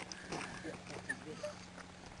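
A young man grunting and straining with his voice, in several short wordless sounds, while wrestling, over a steady low hum.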